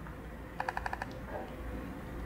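A quick run of about six small, sharp clicks lasting half a second, starting about half a second in, from computer keys or a mouse while code is selected and run. A faint steady hum sits underneath.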